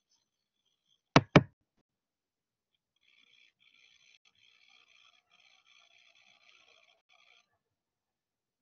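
Two sharp knocks in quick succession, about a quarter second apart, a little over a second in, close to the microphone. Afterwards only a very faint hiss.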